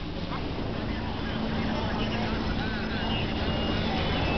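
Steady low mechanical rumble with a constant hum, with faint indistinct voices in the background.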